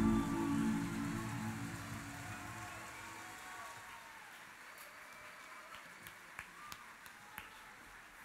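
A live band's final chord ringing out and fading away over the first three seconds or so, followed by a few faint, scattered hand claps.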